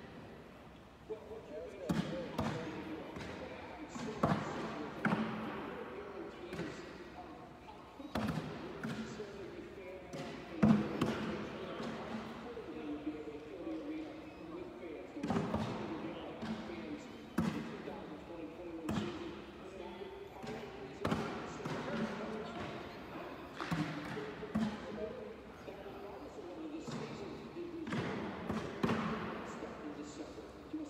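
Cornhole bags thudding onto wooden boards, one every second or two, amid echoing voices in a large hall.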